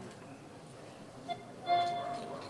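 A quiet lull in live acoustic band music: the last chord fades away, then a single held note sounds near the end.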